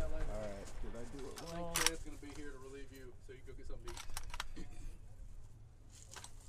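Quiet talking, with a few sharp metallic clicks as an AK-pattern rifle is handled between shots: one click a little under two seconds in and a short cluster about four seconds in. No shot is fired.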